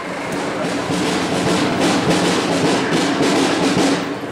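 Marching wind band playing a march, brass and clarinets over regular drum strokes.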